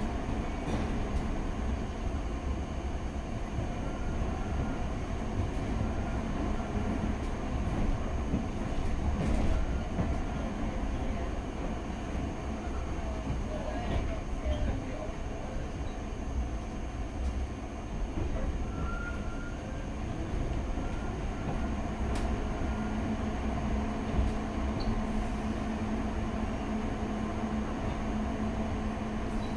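London Underground Piccadilly line 1973 Tube Stock train running, heard from inside the carriage: a steady rumble of wheels on track and running gear. A low hum is there at the start and comes back near the end.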